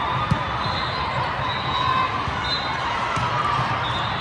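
Indoor volleyball play: a sharp ball strike about a third of a second in and short high squeaks of shoes on the court, over the steady din of a large hall full of games and spectators.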